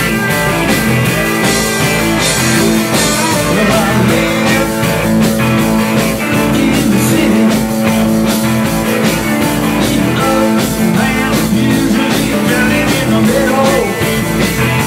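Live rock band playing, taken from the mixing board: two electric guitars, electric bass and a drum kit keeping a steady rock beat.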